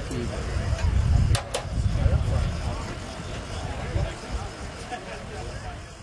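Indistinct voices over a steady low rumble, with two sharp clicks a little over a second in.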